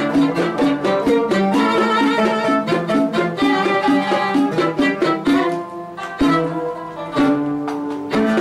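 Live Arabic ensemble music, an instrumental passage led by a violin playing the melody, with no singing. It goes softer for a moment about three-quarters of the way through, then the full ensemble comes back in.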